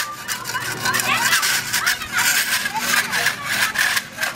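A long-handled tool scraping over a rough, flaking plastered wall in many quick rasping strokes, as old paint is worked off or fresh paint is put on during repainting.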